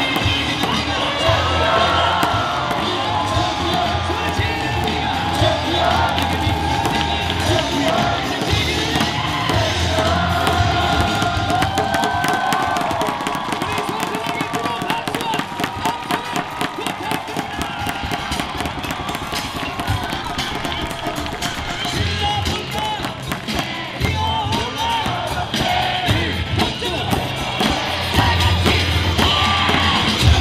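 Cheer music over the stadium loudspeakers, with a large crowd of baseball fans singing and chanting along, cheering and clapping in rhythm.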